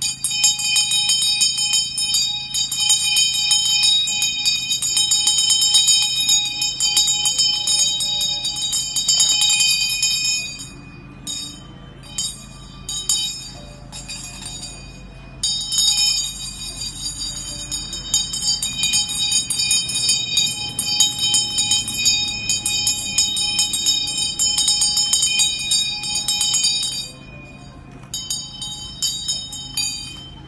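Tibetan-style ritual handbell (ghanta) shaken rapidly, giving a continuous shimmering high ring. It dies down for a few seconds near the middle, rings on again, and thins to a few separate strokes near the end.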